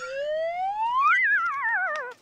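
A comic sound effect: one whistle-like tone slides smoothly up in pitch for about a second, then wobbles back down and cuts off.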